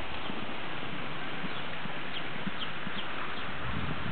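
A horse's hoofbeats at a canter on grass, faint dull thuds under a steady hiss of background noise.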